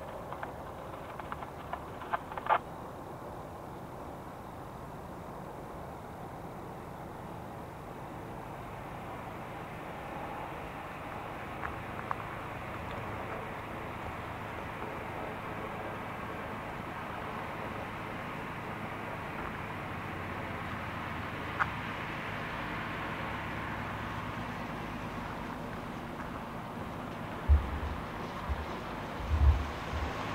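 Distant CSX freight train approaching, a steady noise slowly growing louder as it comes closer. A few sharp clicks come near the start, and a few low thumps come near the end.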